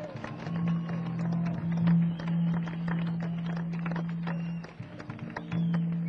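Live jazz-rock band vamping, from an audience recording: a long held low note with scattered percussion hits over it, the note breaking off briefly near the end.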